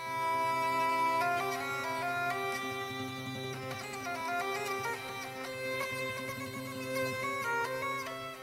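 Instrumental background music: a reedy wind melody moving slowly from note to note over a steady low drone.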